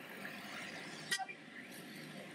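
Low street background noise with a short car-horn toot about a second in.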